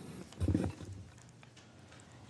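Quiet room tone in a meeting chamber, with one brief low, muffled sound about half a second in.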